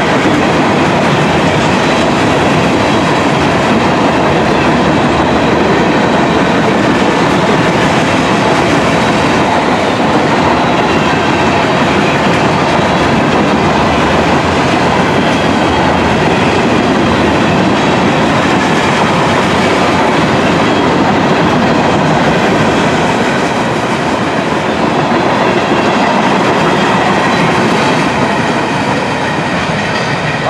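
Freight train of empty covered hopper cars rolling past: a steady rumble of steel wheels on rail with clickety-clack over the rail joints. It eases slightly near the end as the last cars go by.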